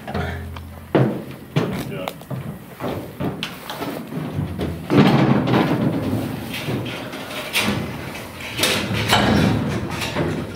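Knocks, thumps and footsteps of a man climbing into and moving about inside an old metal-sided cattle trailer with a wooden floor, irregular hollow impacts throughout.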